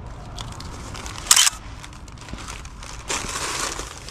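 Plastic takeout bag and foil-lined insulated delivery bag rustling and crinkling as items are lifted out by hand. There is a short, loud crinkle about a second in and a longer rustle near the end.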